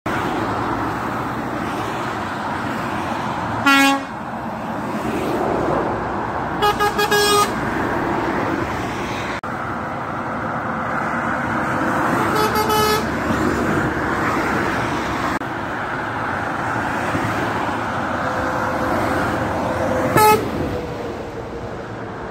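Steady motorway traffic noise from passing cars and lorries, with lorry air horns sounding over it: a short loud blast about four seconds in, a quick run of toots around seven seconds, another blast near thirteen seconds and a last short loud blast near twenty seconds.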